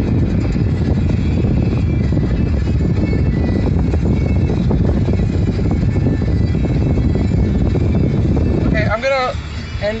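Steady low road and engine rumble inside the cabin of a moving car. A man's voice starts near the end.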